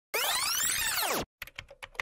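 Intro animation sound effects. A loud sweep of many tones gliding up and then down lasts about a second. After a brief gap comes a quick run of clicks, like keyboard typing.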